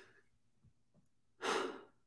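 A man's single audible breath, a sigh about half a second long, a little past the middle.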